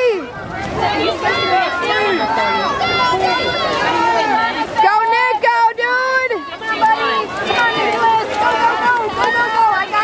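Many high voices from spectators shouting and cheering at once, overlapping so that no single voice stands out, as at a swim race.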